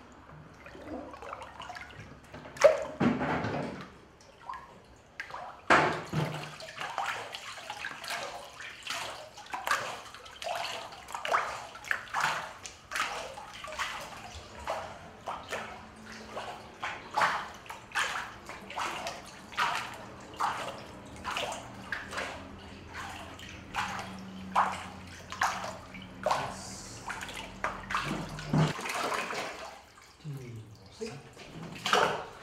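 Water poured from a bucket into a washi papermaking vat, then the vat's water sloshing back and forth in a steady rhythm, a little faster than once a second, as a wooden papermaking mould is rocked through the pulp to form a sheet.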